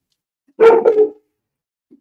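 A dog barking: one short, loud bark about half a second in.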